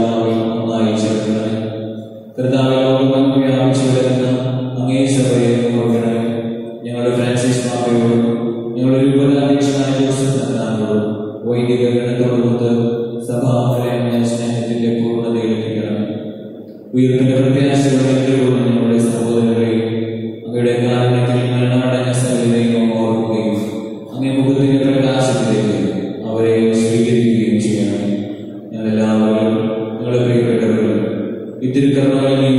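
A priest chanting a prayer in a single male voice, in sustained sung phrases with short breaths between them.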